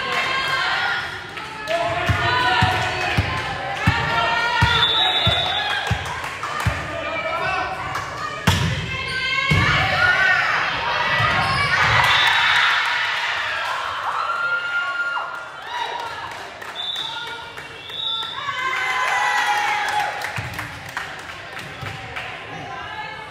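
Volleyball rally in a gymnasium: sharp ball strikes off hands and arms, the loudest about eight and a half seconds in, amid players' and spectators' shouts and calls echoing in the hall.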